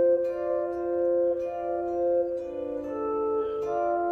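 Clean electric guitar playing a slow line of two-note double-stops that ring on and overlap, with a few note changes partway through: the D minor part of a two-voice etude, an F-and-D double-stop moving through a passing C.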